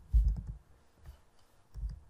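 Computer keyboard keys clicking as a few letters are typed: a short run of keystrokes at the start and another near the end, with a pause between.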